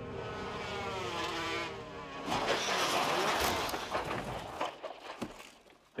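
Racing motorcycle engine at high revs passing by, its pitch wavering and falling over the first two seconds, then a loud rushing noise that dies away to near quiet near the end.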